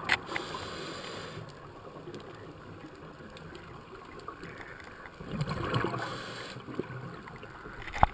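A scuba diver breathing through a regulator, recorded underwater: a rumbling gurgle of exhaled bubbles about five seconds in, lasting about a second, over a quieter steady hiss. There is a sharp click at the start and another near the end.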